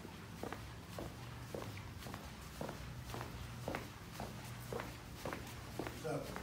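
Footsteps walking at a steady pace on a hard vinyl-tiled hallway floor, about two steps a second, over a steady low hum.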